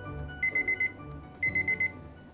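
Digital countdown timer's alarm beeping as it reaches zero: groups of four or five quick, high beeps, one group a second, starting about half a second in. Soft background music plays underneath.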